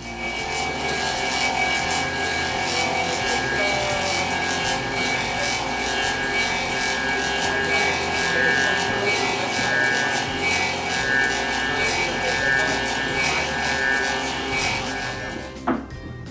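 Clog-making copy lathe running, its cutters shaving a wooden block into a clog shape: a loud, steady noisy run with several held tones through it. It stops with a sharp click just before the end.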